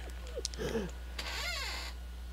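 A faint voice sound with rising and falling pitch, a couple of short glides about half a second in and one longer arch near the end, over a steady low electrical hum.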